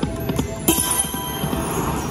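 Marvelous Mouse video slot machine during its free-games bonus: a quick run of clicks as the reels stop, then a bright chiming jingle starting about two-thirds of a second in, over the game's music.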